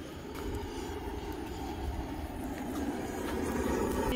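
Handheld butane torch flame blowing steadily onto a charcoal starter briquette in a barbecue grill to light it, growing slightly louder toward the end.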